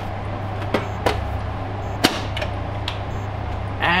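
Sheet-steel top cover of an HPE ProLiant DL580 G8 server being slid into place and seated: a handful of light metal clicks and clacks, the sharpest about two seconds in, over a steady low background hum.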